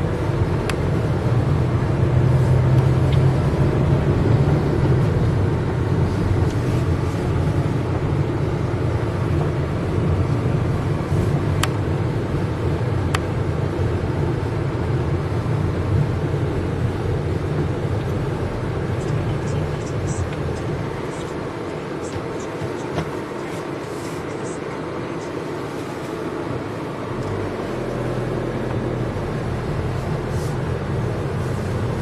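Car engine and road noise heard from inside the cabin while driving slowly: a steady low hum that eases off for a few seconds past the middle.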